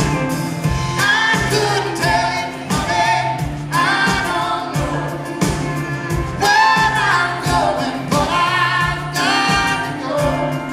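Live country band playing, with sung vocals that include a woman's voice, over electric bass, guitar and a regular drum beat.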